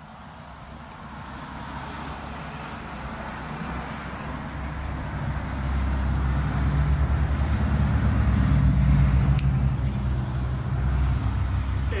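Several red bamboo-stick sparklers burning with a steady hiss, under a low rumble that swells gradually and is loudest about nine seconds in.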